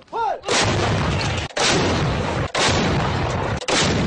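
Artillery fire: four loud blasts about a second apart, each starting sharply, ringing on for about a second, then cutting off abruptly.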